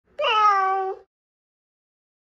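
A domestic cat meowing once: a single call of just under a second, sliding slightly down in pitch.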